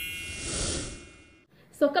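Logo-sting sound effect: a bright shimmering chime fading out over a whoosh with a low rumble, dying away after about a second and a half.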